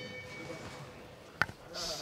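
Boxing ring bell's ringing dying away after being struck to start the round. A single sharp knock about a second and a half in, then a faint voice near the end.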